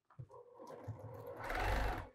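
Electric sewing machine stitching a seam through quilt pieces, running steadily and getting louder toward the end before stopping.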